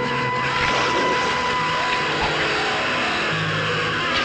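Loud horror-film soundtrack: a dense noisy layer over sustained low notes, with no clear beat or words.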